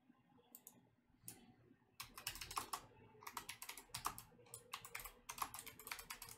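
Faint typing on a computer keyboard: a few scattered key clicks, then rapid runs of keystrokes starting about two seconds in.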